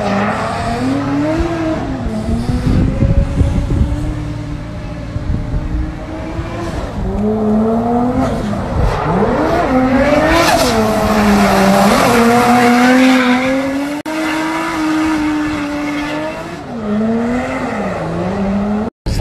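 Drift car sliding through a corner in tyre smoke, its engine revving up and down again and again at high rpm, with tyre squeal. It is loudest around ten to thirteen seconds in.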